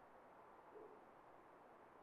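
Near silence: faint room tone, with one barely audible short low sound a little under a second in.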